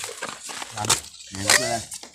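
A short vocal utterance a little past halfway, preceded by faint scattered clicks and rustling.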